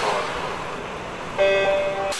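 Intro logo sound effect: a whooshing swell fades, then about a second and a half in a bright held chord starts suddenly and cuts off shortly after.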